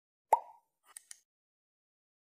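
Subscribe-button animation sound effect: a single loud pop about a third of a second in, then a quick double mouse click a little later.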